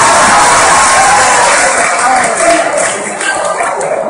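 Audience cheering and shouting, dying down about halfway through into scattered clapping.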